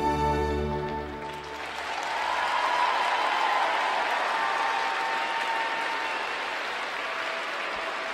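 Skating program music ends about a second in, then arena audience applause rises and carries on steadily.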